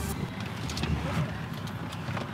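Steady low rumble of a car cabin, with a few faint clicks.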